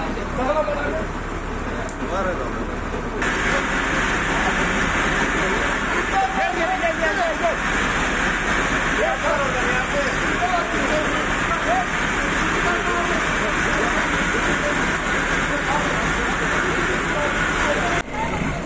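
Several people talking and calling in the background, over a steady rushing hiss that comes up suddenly about three seconds in.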